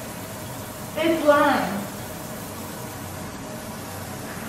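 Kitchen faucet running steadily into a stainless steel sink, with a short wordless vocal sound from a person about a second in.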